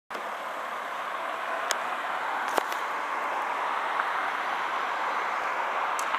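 Steady street traffic noise, a continuous hiss of cars on the road, with a few faint clicks.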